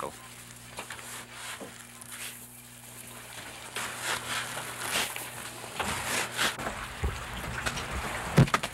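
A low steady hum for the first few seconds, then scattered knocks and scrapes of handling work in a fishing schooner's hold.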